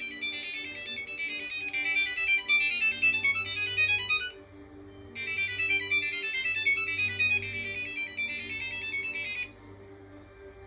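Samsung Galaxy SmartTag ringing from its small built-in speaker, set off from the phone app: a quick, high-pitched chiming melody played twice, with a short pause between the two phrases.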